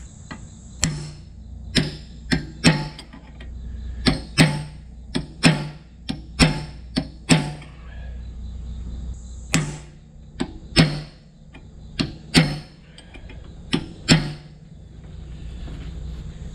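Hammer striking the seized telescoping sleeve of a tractor PTO shaft: about twenty sharp metal-on-metal blows at an uneven pace, each with a short ring, with a pause of about two seconds midway.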